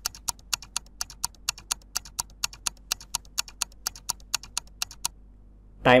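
Countdown-timer sound effect: quick, even clock-like ticks, about four a second, that stop about five seconds in.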